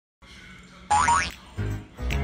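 A cartoon-style boing sound effect about a second in: a quick tone sweeping up in pitch. It is followed by background music with a low, rhythmic beat near the end.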